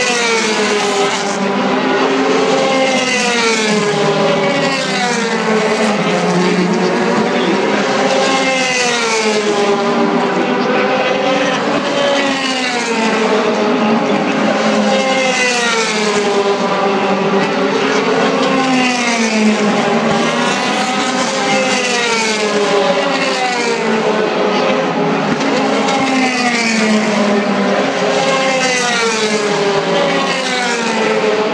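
DTM touring cars' 4-litre V8 engines racing past one after another, their note climbing and dropping every couple of seconds as they rev up and back down through the gears.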